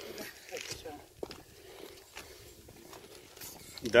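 A hiker climbing a steel pipe ladder: scattered shuffling footsteps and small knocks, with one sharp knock on the metal about a second in.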